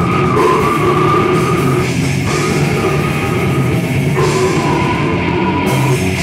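Death metal band playing live: distorted guitars, bass and drums at full volume. A held high note runs over the band, breaking off and coming back about every two seconds.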